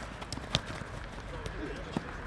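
Football-pitch sound: distant players' shouts and field noise, with two sharp knocks of a football being kicked, about half a second in and near the end.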